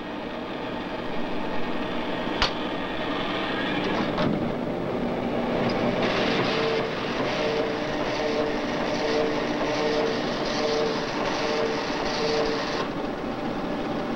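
Type-bar line printer of an IBM 1440 data processing system running a print job: a rapid mechanical chatter sets in about six seconds in and stops shortly before the end, with a tone pulsing about one and a half times a second. A single sharp click comes a few seconds before the printing starts.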